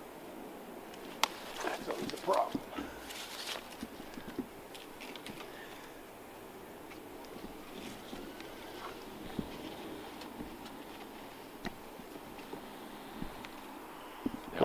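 A throw ball and its line tossed up into a beech tree: a sharp knock about a second in, then a few seconds of rustles and clicks as it goes through the branches, followed by faint scattered ticks.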